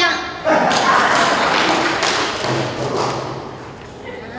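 A thump about half a second in, then a few seconds of rustling noise that fades away, as a cardboard placard is handled near a stage microphone. A few spoken sounds come through it.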